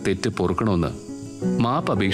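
A voice speaking over steady background music, with a short pause about a second in.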